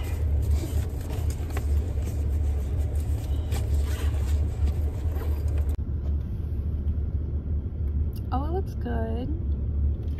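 Steady low rumble of an idling car, heard inside the cabin, with light rustling of paper takeout packaging. A short voiced sound that rises and falls comes near the end.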